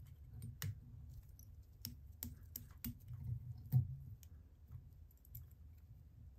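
Faint, irregular light clicks and handling noise from a whip-finish tool and tying thread being worked around the head of a fly in a vise, about a dozen small ticks spread across a few seconds over a low room hum.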